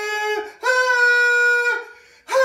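A man singing long held notes in a high voice, each scooping up at its start and separated by short breaths. One note ends about half a second in, and a higher one is held for about a second after it.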